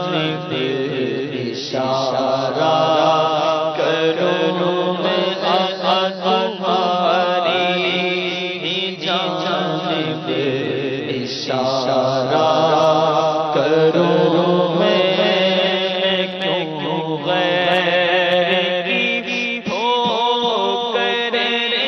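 A man singing an Urdu devotional naat into a microphone, unaccompanied by instruments, in long ornamented melodic lines with a steady low drone beneath.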